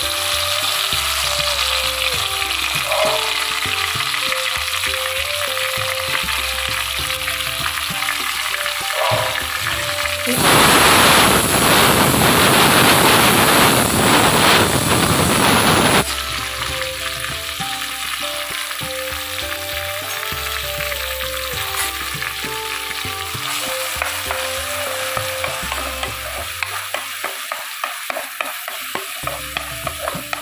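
Chopped onions, tomato and green chilli sizzling steadily in hot oil in a pan, over a soft background melody. A much louder hiss starts about a third of the way in and lasts about six seconds. Near the end a spatula stirs and scrapes in even strokes.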